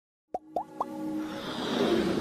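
Sound effects of an animated logo intro: three quick rising pops about a quarter second apart, then a swelling whoosh that builds toward the end.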